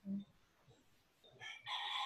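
A short low hum at the very start, then, about one and a half seconds in, a loud drawn-out animal call with several pitched tones begins and carries on to the end.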